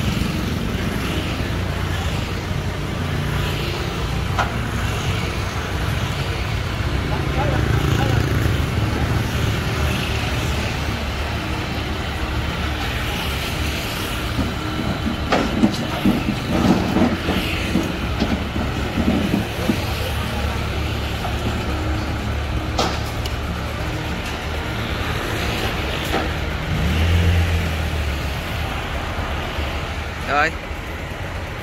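Kubota L5018 tractor's diesel engine running as the tractor is driven up steel loading ramps onto a truck bed, with a few sharp metal clanks from the ramps about halfway through and the engine swelling louder near the end.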